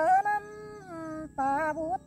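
A woman singing a Tai folk song in a long wordless vowel line, holding wavering notes that slide up and down in pitch. She breaks off briefly about a second in and then resumes.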